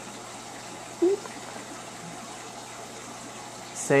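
Steady rush of water circulating in a pond tank, with a low steady hum underneath; a brief voice sound comes about a second in.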